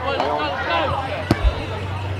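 A rugby league ball kicked off from the ground: a single sharp thud of boot on ball a little past halfway, over the chatter of players' and spectators' voices.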